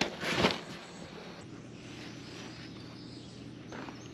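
A brief rustle of a rolled shade fabric and its cardboard box being handled, then faint steady outdoor background noise.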